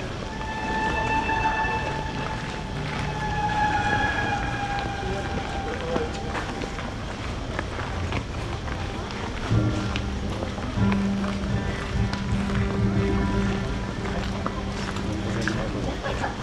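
Outdoor festival crowd chatter with music playing. A high held note sounds in the first few seconds, and a steady low hum comes in about nine seconds in.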